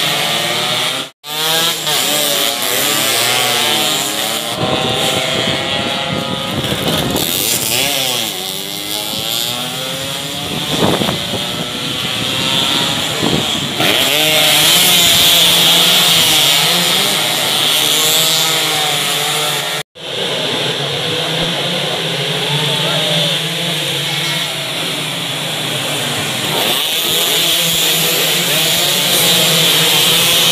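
Several two-stroke underbone racing motorcycles going by at racing speed, their buzzing engines overlapping and rising and falling in pitch as they rev and pass. The sound breaks off for an instant twice, about a second in and again near the middle.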